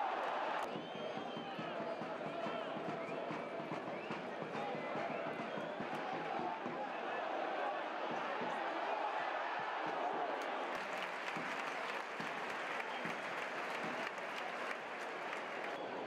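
Football stadium crowd: a steady mass of many fans' voices shouting and chanting, with scattered claps.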